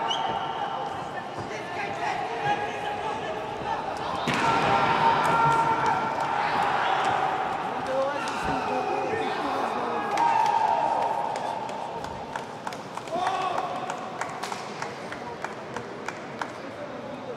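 Men's voices calling and talking in an arena between rounds, with louder drawn-out calls partway through. Scattered sharp knocks come mostly near the end.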